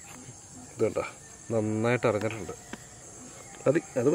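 Insects chirring steadily in a high, thin band, under a man's voice speaking in a few short phrases.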